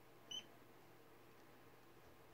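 A single brief, high-pitched squeak from a baby pet rat, otherwise near silence.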